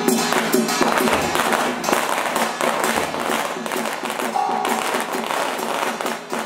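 Drum and percussion music playing with a quick, steady beat.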